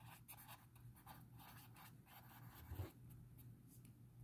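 Faint scratching of a pen writing a word on paper, in short quick strokes, with a soft low bump near three seconds in.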